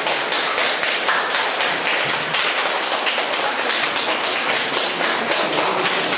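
An audience applauding: many pairs of hands clapping at a steady level.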